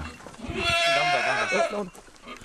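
A goat bleating: one long call of about a second and a half, during kidding season.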